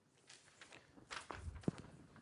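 A few faint footsteps on a hard floor, spaced unevenly, the clearest near the end.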